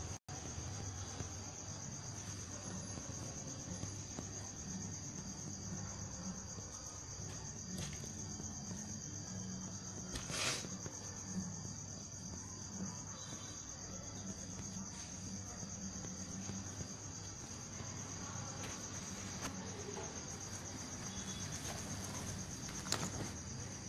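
A steady high-pitched drone over a low hum, with one short click about ten and a half seconds in.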